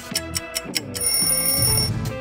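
Quiz countdown music with a fast, even ticking beat. About a second in, a ringing alarm-like sound effect takes over for about a second as the countdown timer runs out.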